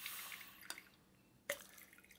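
Red wine dispensed from a bottle into a wine glass through a clamp-on pouring device: a soft hissing stream for about the first second, with a couple of small clicks after it.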